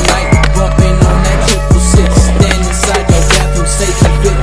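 Soundtrack music with a steady beat of deep, falling bass-drum hits and ticking high percussion over held chords.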